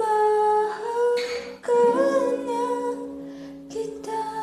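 A woman's voice humming a slow Filipino ballad melody in a few long held notes with a slight waver.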